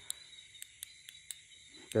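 Night insects, crickets among them, chirring steadily in a thin, high-pitched hum, with a few faint scattered clicks over it.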